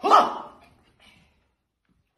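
A loud shout from a man's voice, the last of a run of shouted words, falling away within about half a second; a faint short sound follows about a second in.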